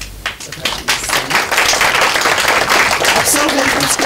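An audience applauding. Dense clapping starts a moment in, holds steady and eases off just before the end.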